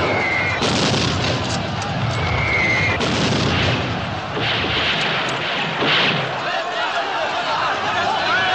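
Film battle soundtrack: rifle fire and booming explosions over a continuous din of a shouting crowd. A short, shrill high note sounds twice in the first three seconds.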